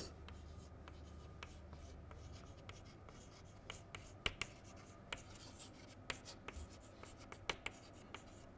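Chalk writing on a chalkboard: faint, irregular taps and short scratching strokes as words are written out, most of them in the second half.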